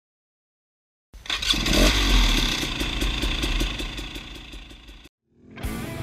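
Short intro sound mixing music with a motorcycle engine, with a low rumble and a regular ticking about seven times a second. It starts about a second in and fades over about four seconds before cutting off.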